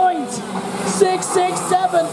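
A race commentator's voice talking over two-stroke TaG kart engines running close by.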